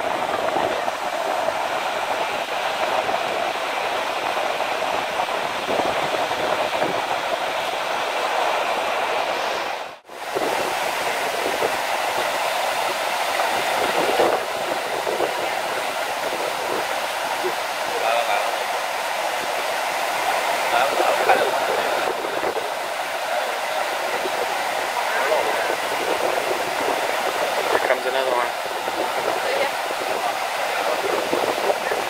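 Surf washing in over lava rocks and sand: a steady rush of waves that cuts out briefly about ten seconds in.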